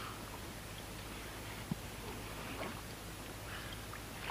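Faint handling sounds of a large carp being lifted out of a padded unhooking cradle: soft rustles of the fish and mat, with one small click a little before halfway, over a low steady hum.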